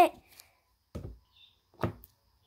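Lid of a slime jar being taken off and handled: a soft knock about a second in, then a sharper tap near the end.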